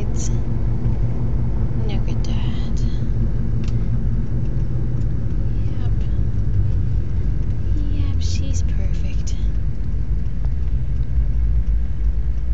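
Steady low rumble of a moving car heard from inside the cabin, with faint murmured voices twice.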